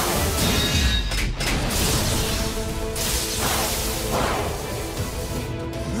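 Dramatic background music under loud cartoon sound effects of spinning battle tops rushing and crashing, surging in waves.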